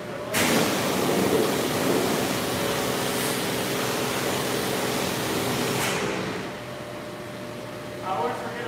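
Pressure washer wand spraying in one burst of about six seconds: a loud hiss that starts suddenly and cuts off, with a steady hum underneath.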